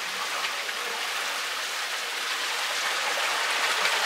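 Running water splashing steadily into a koi pond.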